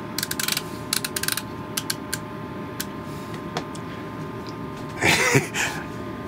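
Stryker CB radio's channel-selector encoder clicking through its detents as the knob is turned to step through the channels: quick runs of clicks in the first two seconds, then a few single clicks. A short hissing noise comes about five seconds in.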